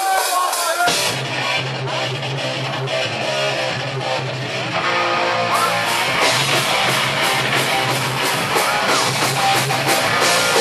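Hardcore punk band playing live at a small basement show: electric guitar and bass start the song about a second in, and drums with crashing cymbals join about halfway through.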